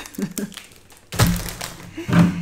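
A snack bag set down on the table: a soft thunk about a second in, with brief low vocal sounds around it.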